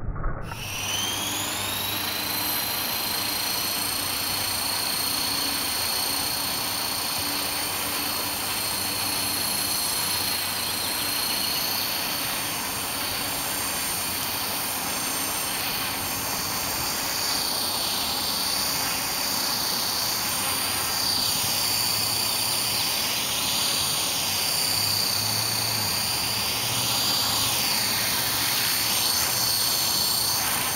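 EXI-450 electric 450-size RC helicopter running: a steady high motor whine with rotor noise, gliding up in pitch over the first couple of seconds and then holding. From about halfway on, the sound wavers up and down in pitch as the helicopter moves about.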